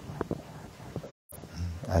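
A pause in a man's speech: faint room noise with a few soft clicks, then his voice resumes near the end.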